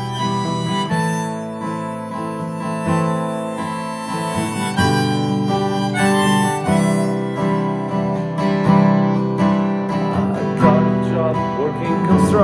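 Harmonica solo, played from a neck holder and holding long notes, over a strummed Martin M-36 acoustic guitar.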